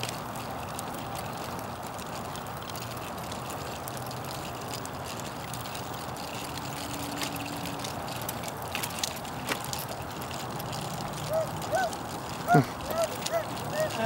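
Stroller wheels rolling steadily over pavement. In the last few seconds, a dog barks several times in short bursts.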